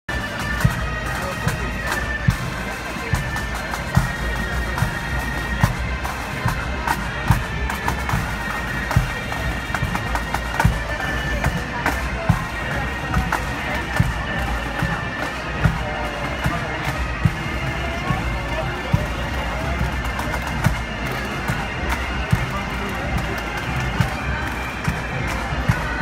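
Bagpipe music with a steady held tone and a regular drum beat about every 0.8 seconds, with crowd voices underneath.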